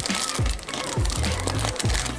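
Music with a heavy kick drum, about two beats a second, over a steady bass line.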